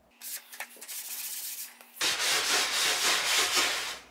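Cloth rubbing back and forth over unfinished wooden boards, wiping off loose wood dust. The rubbing is softer for the first two seconds, then louder and closer from about two seconds in.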